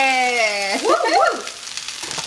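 Shredded cabbage and onion sizzling in a hot wok, a steady hiss throughout. A person's drawn-out "yeah" is loudest over the first part, followed by a brief rising-and-falling vocal sound, and then the sizzle is heard alone.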